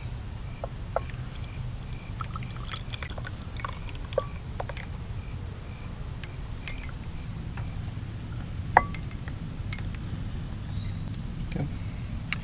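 Metal spoon scraping and clinking against a saucepan and glass canning jars as thick jam is spooned into the jars. Scattered light taps, with one sharper clink late on, over a steady low rumble.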